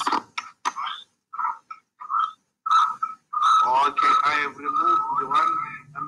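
Video-call audio breaking up: short clipped voice fragments, then a steady high feedback whistle under echoing speech from about halfway on. This is acoustic feedback from a caller's two devices picking each other up.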